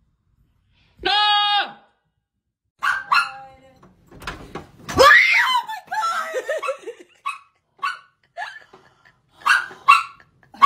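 Screams from a jump scare: a short held scream about a second in and a louder one that rises and falls about five seconds in, followed by a woman laughing in short bursts.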